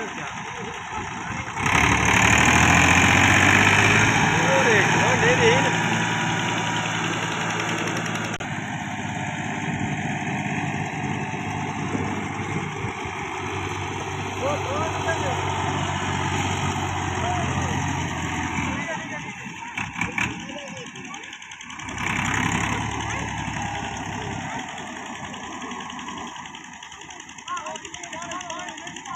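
Massey Ferguson 260 tractor's three-cylinder diesel engine running under load, working in deep mud. It comes in loud about two seconds in, runs steadily a little quieter from about eight seconds, drops away near nineteen seconds and picks up again briefly a few seconds later.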